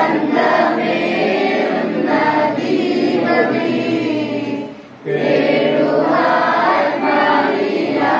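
A group of girls and women singing a Christian prayer hymn together. The singing breaks briefly just before five seconds in, then carries on.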